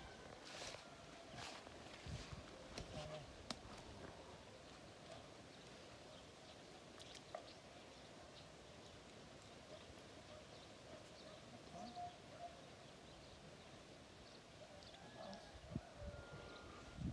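Near silence: faint outdoor ambience, with a few soft knocks in the first few seconds and a few faint high ticks.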